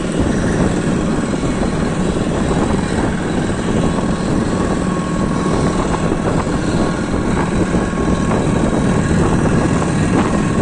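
Steady, loud, unbroken engine rumble with a faint steady high tone held above it.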